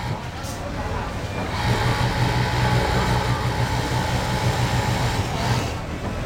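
Pegasus cylinder-bed industrial sewing machine running steadily as it top-stitches a T-shirt armhole, rising in level about a second and a half in, over the noise of a busy garment-factory floor.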